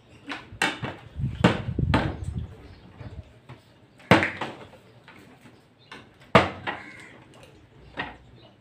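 A partly filled plastic water bottle being flipped and landing on a table top, giving several sharp knocks spread through the few seconds.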